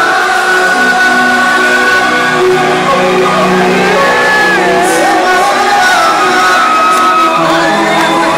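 Live band music with a singer on stage, the voice and instruments holding long notes; loud and continuous.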